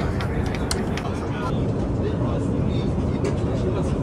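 Steady low rumble of an Airbus A350's cabin in cruise, with faint voices of other passengers.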